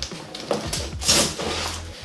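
Handling noise of a float tube's fabric and a landing net's mesh being fastened by hand: a short rustle about half a second in, then a longer, louder rustle and scrape around a second in.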